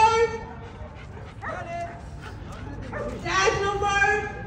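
Long-coated German Shepherd whining in high, drawn-out whines. One fades out just after the start, a fainter one comes about a second and a half in, and a loud one begins near the end.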